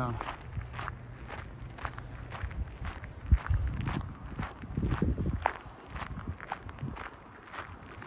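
Footsteps crunching at a steady walking pace on a gravel path, over low wind rumble on the microphone that swells with a thump about three seconds in and again around five seconds.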